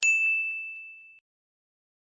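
A bell ding sound effect: one bright, high strike that rings and fades, cut off just over a second in.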